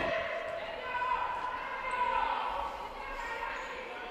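Futsal play on an indoor sports hall court, heard through the hall's echo: players' shoe squeaks and the ball on the floor, with a drawn-out squeak or shout about a second in.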